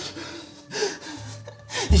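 A man's gasping breaths: two short, sharp intakes of breath about a second apart, from a feverish, frightened man. A low music drone comes in under them about halfway through.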